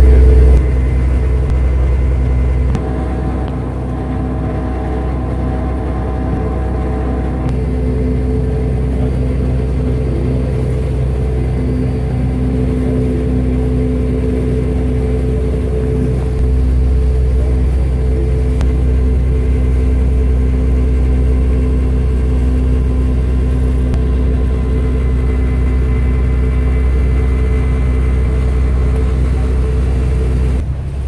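Diesel engine of a Venetian vaporetto (water bus) running steadily underway: a low rumble with a steady hum over it. It eases a little about three seconds in and picks up again about halfway through.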